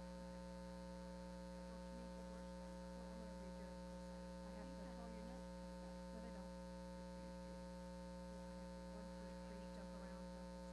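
Steady electrical mains hum on the sound feed: a low, even buzz made of many fixed tones, with faint, distant voices barely showing through in the middle.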